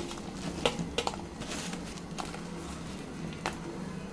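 Hot fried urad dal dumplings dropped one at a time into a steel pot of salted water, giving about four short splashes spread a second or so apart.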